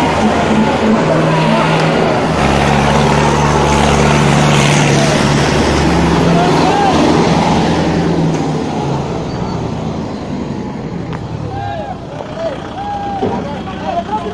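Tractor diesel engines labouring under full load in a tug-of-war pull, with people shouting over them. The engine note drops away after about eight seconds, leaving shouts and voices.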